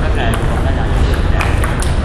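Table tennis rally: a celluloid ball clicking sharply off the paddles and the table, about six hits in quick, uneven succession, over a background of voices.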